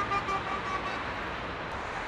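Outdoor ambience of distant road traffic, a steady wash of noise with a few faint short tones in the first second.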